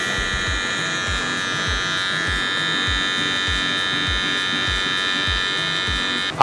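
Electric hair clipper buzzing steadily as it trims the hair around the ear, over background music with a regular low beat.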